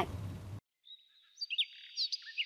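After a stretch of silence, birds begin chirping about a second and a half in: high, thin whistled notes and short sweeping chirps.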